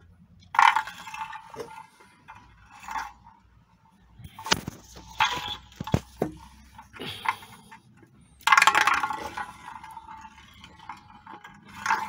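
Small wooden tippe top spun inside a metal frying pan, scraping and clattering against the pan bottom in bursts. It is loudest just after the start and again about two-thirds through, with sharp clicks in between.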